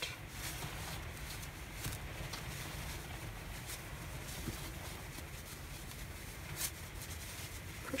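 Faint rustling and brushing of a crocheted yarn mitten being handled and turned right side out, with a few soft scuffs, over a steady low hum.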